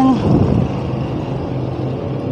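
A motor vehicle's engine running with a steady low hum, in street traffic.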